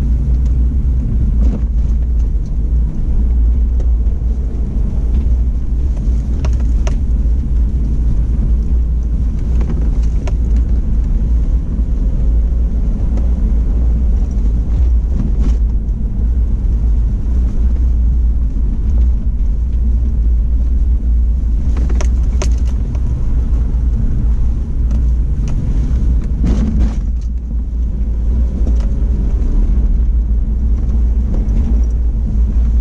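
Off-road vehicle driving along a sandy, rutted dirt wash: a steady low rumble of engine and tyres on the rough track, broken by a few sharp knocks or rattles, most of them about two-thirds of the way through.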